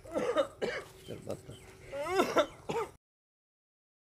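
A person's voice making a few short, broken vocal sounds. The sound then cuts off completely about three seconds in.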